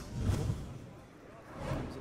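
Broadcast transition sound effect for a replay wipe: a swoosh with a low thump in the first half-second, then a second swish swelling near the end.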